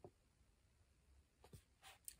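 Near silence: room tone with a couple of faint, short clicks.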